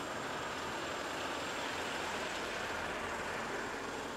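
Street traffic: a truck and cars driving over a cobblestone road, making a steady, even noise with no distinct events.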